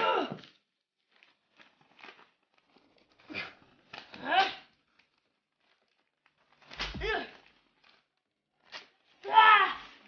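A boy's wordless, frustrated vocal outbursts, several short groans and cries with wavering pitch, while a sheet of drawing paper is torn and crumpled with faint crackles in between.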